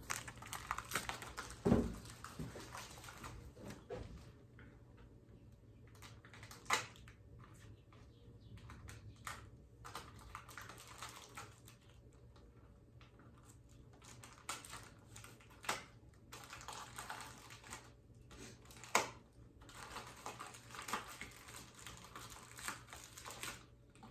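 Plastic wrapping crinkling and being pulled off a bottle by hand, with irregular small clicks and rustles and a few sharper knocks.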